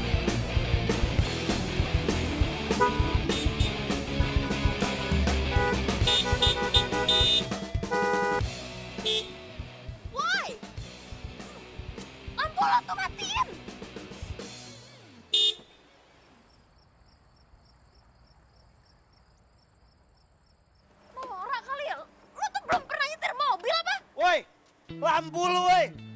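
Background music with a drum beat, with a car horn honking several times a few seconds in. Then come short vocal exclamations, a near-silent stretch, and voices again near the end.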